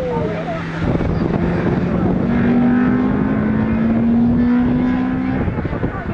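Honda Integra Type R's 1.8-litre VTEC four-cylinder engine pulling hard as the car passes and drives away; the engine note holds steady, then climbs slowly in pitch from about two seconds in until near the end, with wind noise on the microphone.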